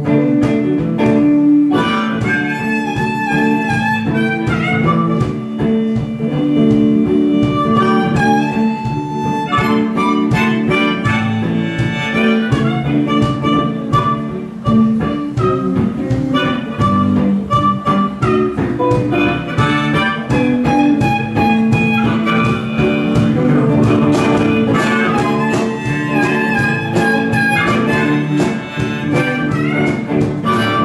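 Blues harmonica playing an instrumental solo of held and bent notes over picked guitar accompaniment.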